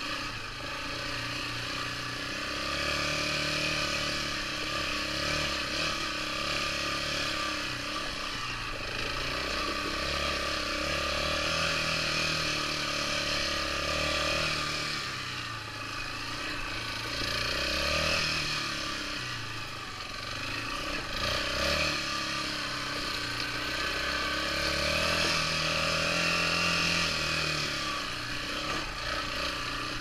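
Yamaha Raptor 350 ATV's single-cylinder four-stroke engine running on the trail, its pitch rising and falling every few seconds as the throttle is worked, over a steady rushing noise.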